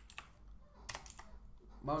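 A few sparse computer keyboard keystrokes, one sharper than the rest about a second in, with a man's voice starting near the end.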